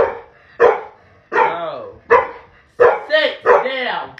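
A dog barking repeatedly in rough play with its owner, about eight short barks in four seconds.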